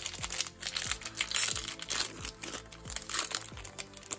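Foil wrapper of a baseball card pack crinkling as it is pulled open by hand, over background music.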